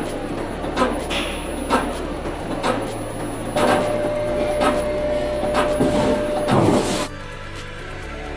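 DCM32P-S vertical CNC wheel repair machine running its automatic probe detection of an alloy wheel: a steady machine hum with a click about once a second and a thin high whine, joined by a steady mid-pitched whine from about halfway. The machine sound cuts off near the end, leaving background music.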